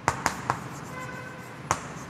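Chalk tapping and scratching on a blackboard as words are written: a few sharp clicks, three close together at the start and one more near the end.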